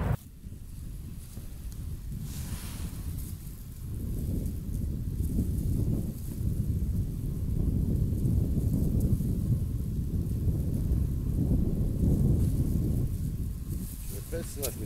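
Wind buffeting the microphone: a low rumble that rises and falls in gusts.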